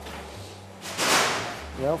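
A ceramic plate sliding across a stainless-steel counter as it is picked up: one brief scraping whoosh about a second in. A man's voice says "yeah" at the very end.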